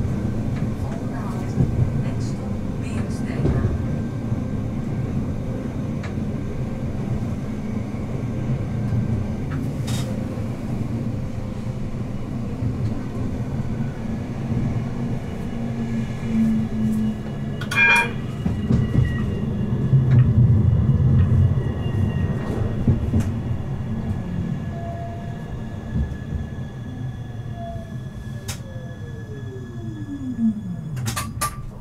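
Siemens Avenio low-floor tram running on its track, heard from inside: a steady low rumble of wheels on rail with occasional clicks, and a brief ring a little past halfway. Over the last few seconds a whine from the drive falls steadily in pitch as the tram brakes to a stop.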